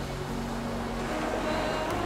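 Background music of soft, sustained held notes without singing, shifting to new notes about halfway through.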